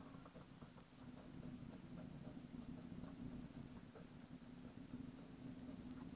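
Faint scratching of a wooden pencil on lined paper in short, irregular strokes as squares of a drawn rod are shaded in.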